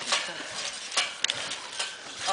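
Bare feet splashing and slapping on a trampoline mat covered in water, a few short, sharp splashes at irregular moments, with faint voices behind.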